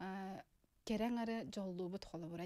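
Speech: a woman's voice with long vowels held at a nearly level pitch, broken by a short pause about half a second in.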